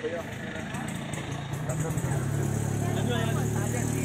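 An engine running at a steady low pitch, growing louder about two seconds in, with people talking in the background.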